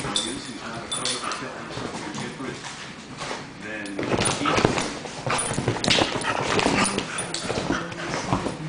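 Two dogs play-fighting on a leather couch: whines and yips mixed with scuffling, pawing and bumping against the leather.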